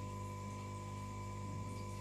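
Faint steady electrical mains hum: a low buzz with a thin, higher steady tone above it.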